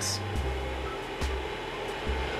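Severin portable electric cooler's fan running steadily on the max setting, a soft even whir much like a small household fan, with a couple of faint clicks.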